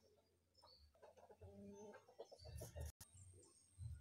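Quiet background with faint bird calls, including a short pitched call about a second and a half in; the sound drops out for an instant about three seconds in.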